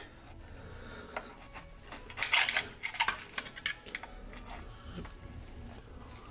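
A knife sawing through a piece of cooked steak on a plate, with scraping and sharp clinks of the knife and fork against the plate, loudest about two to four seconds in.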